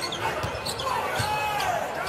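Basketball being dribbled on a hardwood court, a few bounces roughly half a second apart.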